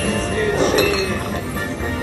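Aristocrat Prost! Deluxe slot machine playing its bonus-round music, with glassy clinking sound effects as beer-mug symbols land on the reels during the free games.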